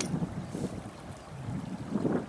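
Breeze buffeting the microphone: an uneven low rumble that rises and falls.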